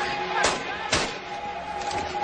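Gunfire in a film shootout scene: two sharp shots about half a second apart, with a held tone underneath.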